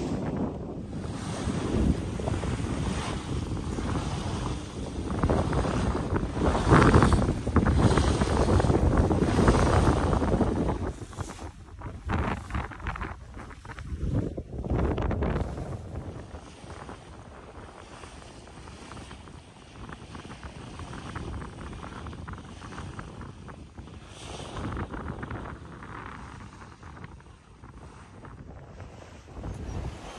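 Wind buffeting the microphone over the rush and splash of water along the hull of a sailboat heeled under sail. Loudest in the first part, then quieter from about halfway through.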